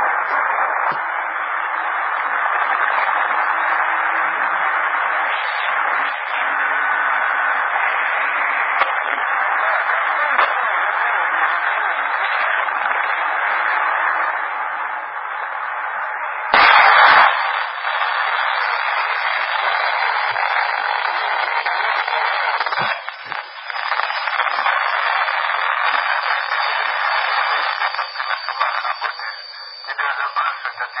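CB radio receiver hiss and static between transmissions, steady and band-limited like audio from a radio speaker. A little past halfway a short, loud crash of noise cuts in, after which the hiss changes character and a thin high whistle runs through it.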